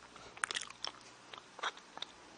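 Wet mouth sounds, lips and tongue clicking and smacking, on the soundtrack of a close-up video of a mouth: a flurry of clicks about half a second in and another near the end.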